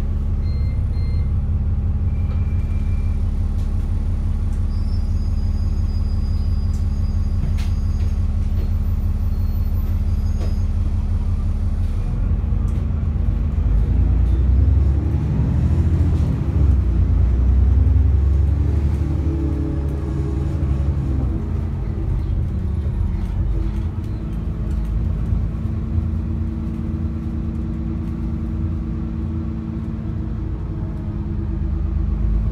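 Diesel engine of an ADL Enviro 400 double-decker bus heard from inside the passenger saloon: idling steadily at a stop, then about twelve seconds in the bus pulls away and the engine note rises and grows louder as it accelerates, settling to a steadier run near the end.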